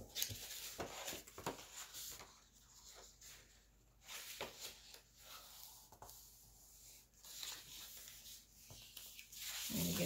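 Scrapbook paper rustling and creasing under the hands as a fold is pressed along its bottom edge: a faint run of short crackles and slides.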